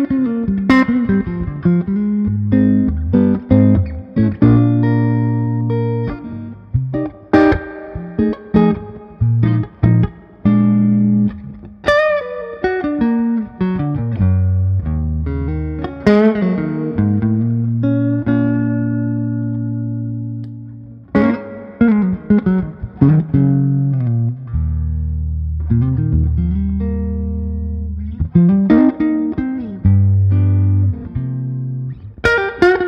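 Harmony Meteor H70 hollow-body electric guitar with its original 1961 pickups, played through a Fender Vibroverb amplifier: picked single notes and chords ringing out, with a few bent or slid notes and a short pause before the playing picks up again.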